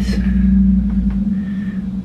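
A steady low hum with a deep rumble through the first second or so, then the rumble drops away. Over it there is faint rustling as a paper mailing envelope is picked up.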